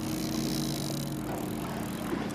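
Boat's outboard motor running steadily, with a steady hiss of wind and water over it.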